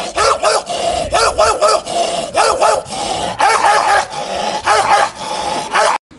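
A man imitating a dog barking, his hand cupped over his mouth: loud, short barks in quick runs of three to five, cutting off suddenly at the end.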